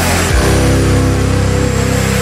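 Loud, heavy background music, a sustained distorted chord that drops in pitch about half a second in.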